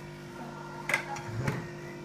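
Objects being handled on a cluttered table during a search: a few light knocks, one about a second in and another half a second later, over a steady low hum.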